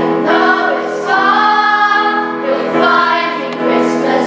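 A choir of 11- to 12-year-old children singing a Christmas song together, the phrases rising and falling on held notes.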